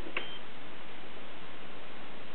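Olivetti M20 computer being switched on: a single click just after the start with a brief high beep, then a steady hiss.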